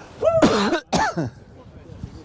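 A man's short non-word vocal sounds, two quick voiced bursts with a harsh, throat-clearing quality in the first second, then only faint background noise.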